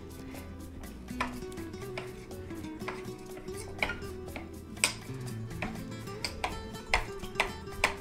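Chef's knife chopping fresh cilantro on a marble cutting board: a quick, irregular series of sharp knocks as the blade strikes the stone, a few of them louder near the end.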